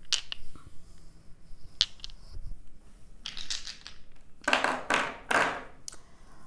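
A handful of small polyhedral letter dice being rattled and rolled onto a table. A few single clicks come first, then a dense clatter that peaks near the end.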